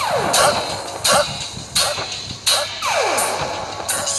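Electronic DJ remix track with hard beats about every 0.7 s and repeated falling pitch sweeps over a steady low bass.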